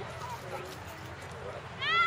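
Distant voices talking on an open playing field, then just before the end a loud high-pitched shout that rises and falls in pitch.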